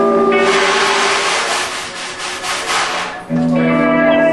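Music of sustained, held notes, cut into from about half a second in by a loud, rushing hiss of noise. The held notes come back just over three seconds in.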